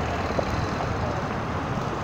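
Small Honda street motorcycle's engine running steadily at low speed as the bike rolls slowly, with road traffic in the background.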